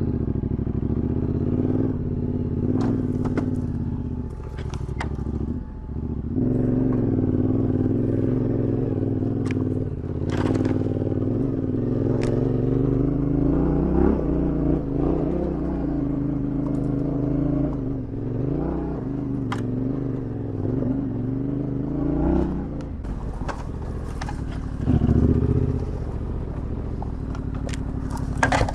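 Yamaha Ténéré 700's parallel-twin engine pulling under load up a steep dirt hill climb, the revs rising and falling with the throttle, briefly dropping off about a fifth of the way in and surging near the end. Scattered clicks and scrapes of brush and stones hitting the bike sound over it.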